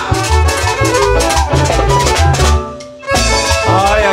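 Chanchona band playing cumbia live without vocals: fiddles over a steady drum-kit beat. The music cuts out briefly about two and a half seconds in, then the band comes back in.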